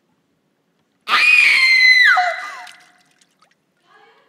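A person's scream starts suddenly about a second in. It is high-pitched and held for about a second, then falls sharply in pitch and fades away.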